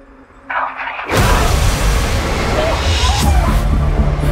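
Horror trailer sound design: a short gasp, then about a second in a sudden loud crash of noise with a deep rumble that holds, under tense music.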